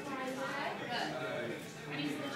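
Background talking: several voices, a woman's among them, in a restaurant dining room, with no train sound standing out.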